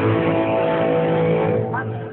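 Amplified guitar chord held and ringing out, several steady tones sounding together, dying away near the end.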